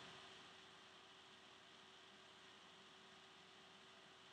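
Near silence: faint steady microphone hiss with a low hum.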